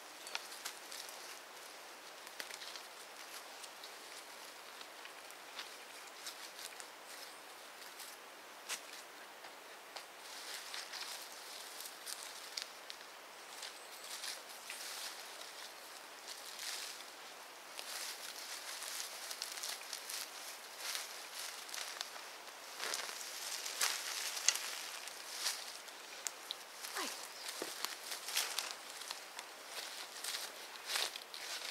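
Hand gardening in a border: soil being handled and pressed around a replanted shrub, with scattered rustles and small crackles of stems and leaves, busier in the second half. Footsteps in rubber wellington boots on soft soil near the end.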